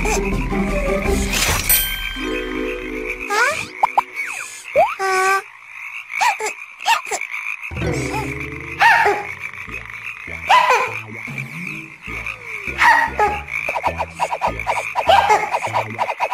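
Many cartoon frogs croaking together in a dense chorus, with a music score underneath.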